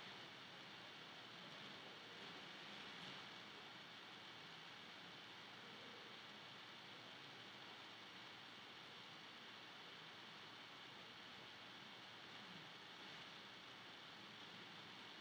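Near silence: steady faint hiss of the recording's background noise.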